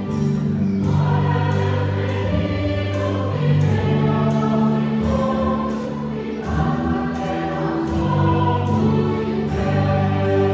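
Choir singing slow music in long held notes, with musical accompaniment.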